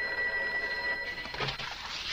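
Telephone bell ringing in a steady ring that stops a little over a second in.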